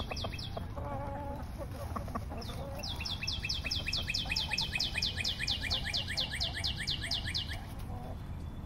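A bird calling in a fast, even series of high, downward-sweeping chirps, about five a second, from about three seconds in until just before the end, after a brief run of the same at the start. Fainter, lower hen clucks come in the first couple of seconds.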